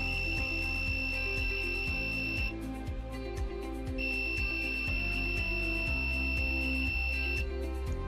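Piezo buzzer module sounding a steady high-pitched warning tone. It is triggered by an Arduino because the INA226 sensor reads a voltage above the 6 V limit. The tone breaks off about two and a half seconds in, then sounds again a second and a half later until shortly before the end.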